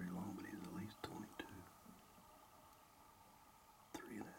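Hushed speech, a person talking under their breath, for about the first second and a half, then quiet, with a sharp click just before the end.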